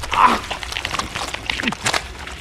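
A man sobbing in short, choked cries, two of them falling in pitch near the end.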